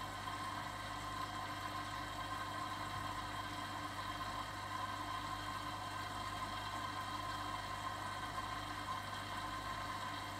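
AEG Lavamat Protex front-loading washing machine on a cold jeans wash, its drum tumbling the laundry: a steady motor hum with a faint constant high tone.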